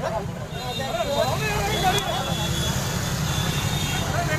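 Several people's voices shouting and talking over one another, over a steady low engine hum that grows stronger about a second and a half in.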